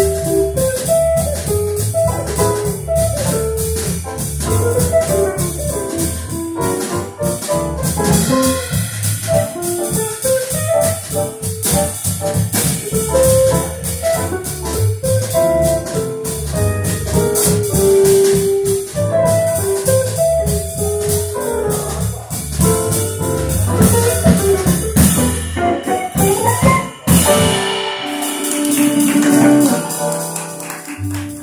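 Jazz quartet of grand piano, archtop electric guitar, upright bass and drum kit playing a swing tune together. Near the end the drumming stops and a rising run leads into a held chord that fades.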